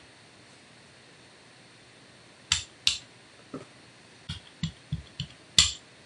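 Short, sharp clicks and light knocks, about eight at uneven spacing in the second half, from craft tools and paint bottles handled on a worktable while a brayer is worked over a gel printing plate.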